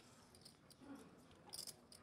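Near silence with faint, scattered clicks of poker chips being handled at the table, a few quick clicks together about one and a half seconds in.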